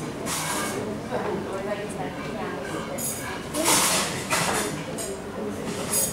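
Indistinct voices talking, with no keyboard music playing. A few short bursts of noise rise above them, the loudest about three and a half seconds in.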